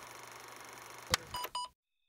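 Electronic title-card transition effect: a faint steady hiss, a sharp click about a second in, then two short beeps, and a sudden cut to silence.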